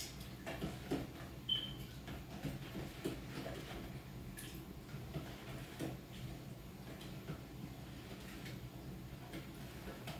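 Metal spoon stirring in a plastic pitcher of Kool-Aid: faint, irregular knocks and clicks against the pitcher, with one short ringing clink about a second and a half in.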